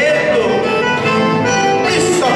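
Live gaúcho folk music led by an accordion, with guitar, playing a havaneira marcada dance tune.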